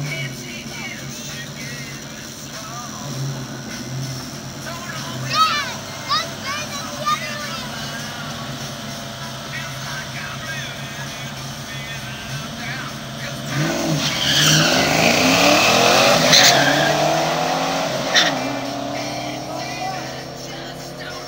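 Drag-racing cars, a turbocharged minivan and a second car, idling low at the starting line, then launching about 14 seconds in: engines at full throttle, rising in pitch through the gears as they pull away down the strip, fading over the last few seconds.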